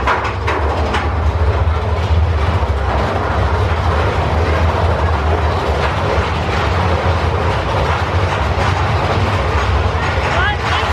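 Big Thunder Mountain Railroad mine-train roller coaster running along its track, heard from aboard: a steady low rumble with the clatter of the wheels.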